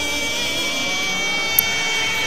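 Anime transformation sound effect: a sustained electronic whine made of a high steady tone over a lower tone that slowly rises in pitch, with a brief high tick about one and a half seconds in.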